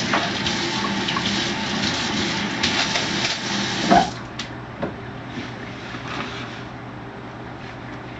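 Kitchen tap running into a sink, a steady rush of water that is shut off about four seconds in with a brief knock.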